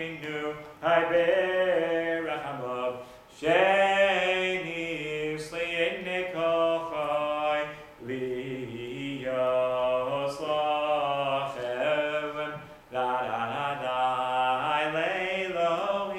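A man singing solo and unaccompanied a very lively Chabad prayer tune, in four sung phrases with short breaths between them.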